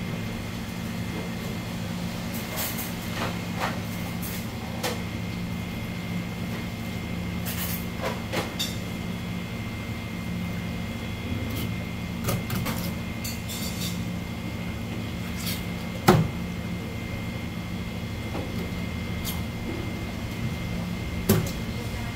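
Knife filleting an olive flounder on a plastic cutting board: scattered quiet scrapes and clicks of the blade working along the bones, with a sharp knock about sixteen seconds in. A steady low hum with a faint high whine runs underneath.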